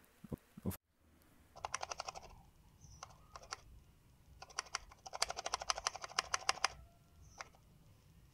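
A counterfeit MagSafe charger shaken in the hand, the loose metal weight plate inside rattling: a short run of quick clicks, then a longer run a few seconds later. The rattle is the sign of a fake charger, whose missing components are made up for with a loose metal plate for weight.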